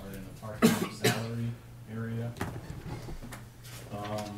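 Two sharp coughs about half a second apart, about a second in, among indistinct talk in a meeting room, over a steady low hum.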